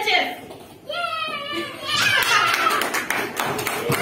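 Young children's voices calling out, rising about halfway through into excited shouting with hand-clapping.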